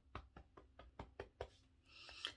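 Faint, quick fingertip taps on the body during EFT tapping, in an even rhythm of about four or five taps a second.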